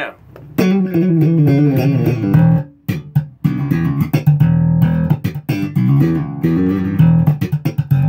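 Ibanez TMB100 electric bass with PJ pickups, both pickups on and its active preamp's bass and treble turned all the way up, played through an Ampeg bass amp: a run of plucked notes starting about half a second in, with a short break near three seconds.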